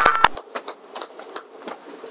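Crackling static with rapid, irregular clicks that slowly fades out: a digital glitch sound effect added in editing.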